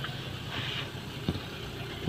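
Car engine running at idle, heard from inside the cabin, with a single light knock just over a second in.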